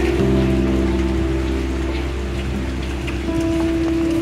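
Background music of long held chords that change every second or two, over the sound of steady rain falling.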